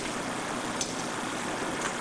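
Electric drill running a Homax Squirrel paint mixer, a steady, even whir with no clear pitch.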